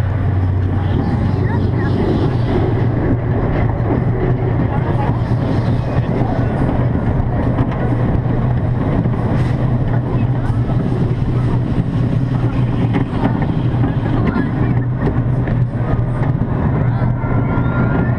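Zierer Tivoli family roller coaster train running along its steel track, heard on board: a steady low hum and rumble of the wheels and drive that holds at an even level throughout.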